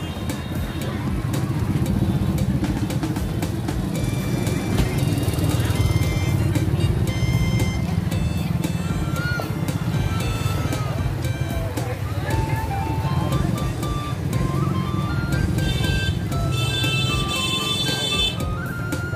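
Busy street hubbub: many people chattering and motorbike engines running as they ride slowly through the crowd. A tinkling melody of music plays over it, and a shriller cluster of high notes comes in near the end.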